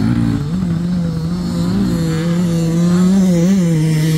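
Small dirt bike's engine running loud and close as it rides past, holding a steady pitch with small rises and dips of the throttle.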